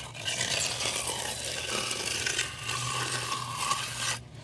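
Steel half-inch bullnose edging trowel scraping continuously along the edge of wet, freshly poured concrete, worked back and forth between the concrete and the bender board form to round a beveled edge.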